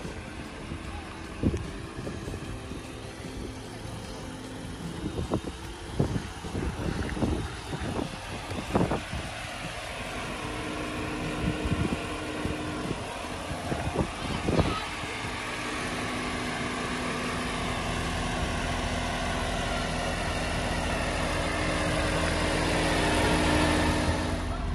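1983 Mercedes-Benz 380SEC's 3.8-litre V8 idling steadily, growing louder in the second half as the microphone nears the rear of the car. A few sharp knocks sound in the first half.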